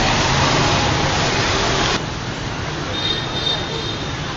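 Steady city street noise with traffic hum, which cuts off suddenly about halfway through to a quieter, even outdoor hum; a faint high thin tone sounds for about a second near the end.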